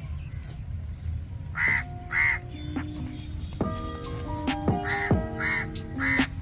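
Harsh bird calls, two close together about two seconds in and three more near the end, over background music with sustained notes and a steady low rumble.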